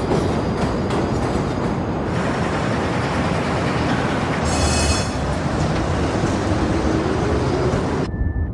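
A train rumbling steadily along the rails, with a brief high wheel squeal about four and a half seconds in.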